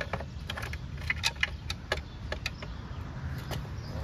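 Irregular sharp metal clicks and clinks from motorcycle tie-down strap hardware being handled and hooked up, with a low rumble of wind on the microphone.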